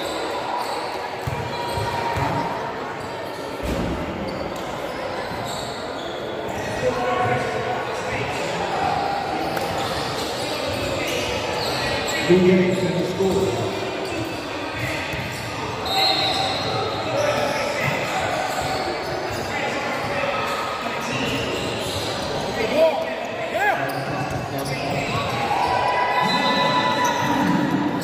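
Echoing gym ambience: indistinct voices of players and onlookers, with basketballs bouncing on a hardwood court.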